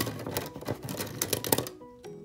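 Plastic pens clicking and rattling against one another and against a metal-mesh pen holder as a hand rummages through them: a quick, irregular run of clicks that stops shortly before the end.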